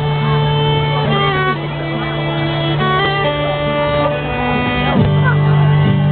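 Live violin playing a slow melody of long held notes over guitar and keyboard accompaniment.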